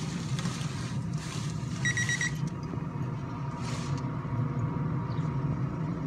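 A digital BBQ thermometer's alarm gives a short, fast run of high beeps about two seconds in, signalling that the smoker has reached its set temperature. Underneath there is a steady low hum, and a foil pan of brisket rustles and scrapes as it is set onto the grill grate.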